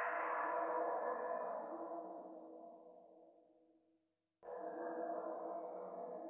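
Live electronic music: a dense, grainy drone with steady held pitches. Over about four seconds it grows duller and fades away. After a brief silence it cuts back in suddenly at full strength.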